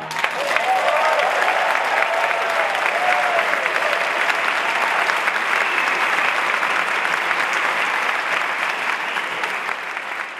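Audience and band applause that breaks out at the end of a trumpet solo, with a few cheering voices in the first three seconds and a slight fall-off near the end.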